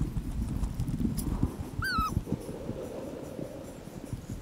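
Footsteps scuffing and crunching on gritty sandstone, with wind buffeting the microphone. About two seconds in comes one short high-pitched whining call, like a dog's whimper.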